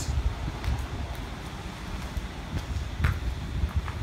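Wind buffeting the microphone, a low uneven rumble, with a few faint ticks.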